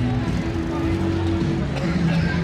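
Busy street ambience: music with held low notes mixed with the chatter of passers-by.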